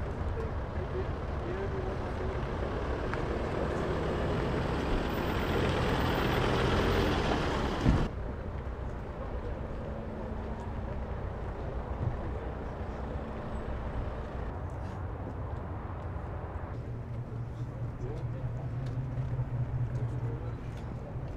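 A car engine running nearby in a car park, with outdoor noise building for the first several seconds. About eight seconds in the sound cuts sharply to a quieter, steady low engine hum.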